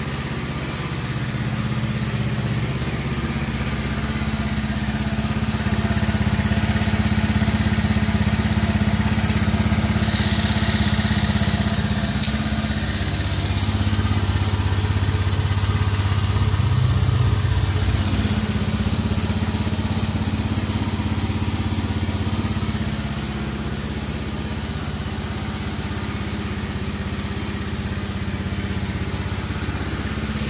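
A Honda Beat 2018 scooter's single-cylinder fuel-injected engine idling steadily. It runs a little louder through the middle stretch and settles back near the end.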